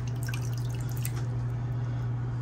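A handful of aquarium plants being swished and dunked in a plastic tub of water, giving light splashing and dripping over a steady low hum.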